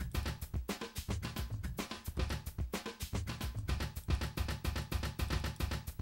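Sampled drum loops from Dr.OctoRex loop players in Propellerhead Reason 5, playing together as a drum-kit groove of bass drum, snare and cymbals with fast, dense hits. The loops are being re-triggered in sync from a Kong Drum Designer pad.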